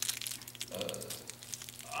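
Steady low electrical hum with fine, constant crackling clicks running under the recording. A short hesitant 'uh' comes from the speaker about a second in.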